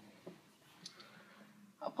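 A few faint, sharp clicks scattered through a quiet stretch over a faint steady hum, then a man's voice starts near the end.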